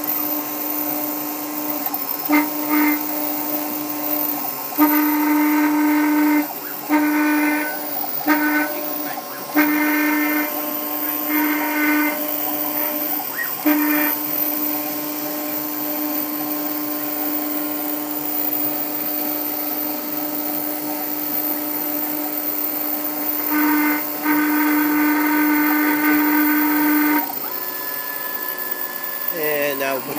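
New Hermes Vanguard 4000 engraving machine running a job, its diamond drag bit spinning as it engraves anodized aluminium. A steady hum runs under a pitched whine that starts and stops in short spurts as the head moves, then holds for several seconds near the end.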